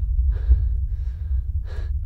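A person breathing hard in three quick, ragged breaths, the last the loudest, over a steady low rumble.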